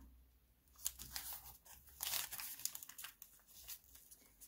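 Brown kraft paper lunch bag being folded and creased by hand: faint crinkling and rustling with a few sharp paper clicks, starting about a second in.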